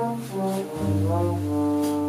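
Jazz trombone playing a melodic line, moving from note to note, over a walking double bass in a small combo.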